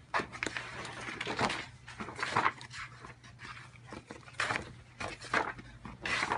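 Large sheets of a wallpaper sample book being flipped over by hand, each turn a papery swish, roughly one a second.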